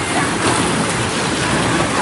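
Steady rush of splashing, churning water from a water ride's pool.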